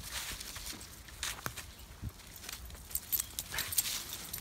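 Footsteps of a person and leashed dogs walking on a dirt trail strewn with dry leaves: irregular light crunches and clicks, more of them near the end.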